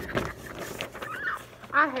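Sheets of paper rustling as hand-held signs are lifted and shaken, then a short rising-and-falling vocal sound and a voice saying "I" near the end.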